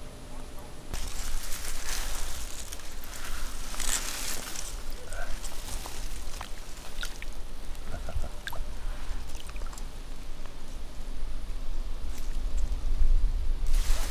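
Shallow river water sloshing and splashing, with drips and small splashes, as a common carp is eased back into the water at the bank from a wet landing net and sling. It starts about a second in.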